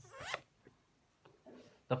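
A brief rasping scrape lasting under half a second, zipper-like, as the recording device is handled and moved. It is followed by quiet.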